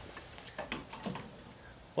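A handful of light clicks and rattles in the first second or so, quieter after, from a small USB travel adapter being plugged in and its clip leads handled.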